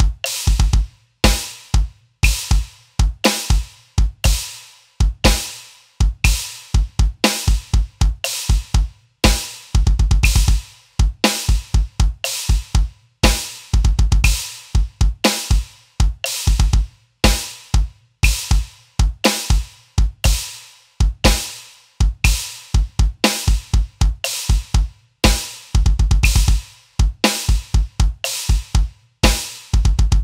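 Electronic drum kit playing a syncopated double bass drum groove at a slow 60 bpm. The two bass drum pedals follow an uneven riff with short fast runs of kicks, under a cymbal hit on every beat and a snare on beats two and four.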